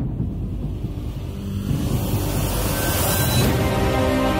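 Logo-intro sound design: a low rumble under a rising whoosh that swells to a peak about three seconds in, then sustained theme-music chords come in near the end.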